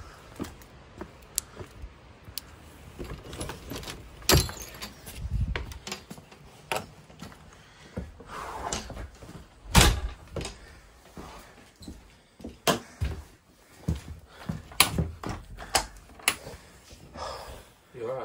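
An irregular run of knocks, thuds and clicks from a wooden door being handled and pushed open, with handling noise close to the microphone. The loudest thuds come about four and ten seconds in.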